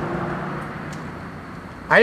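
Steady background noise with a low hum, slowly fading over about two seconds, with a few faint ticks; a man starts speaking at the very end.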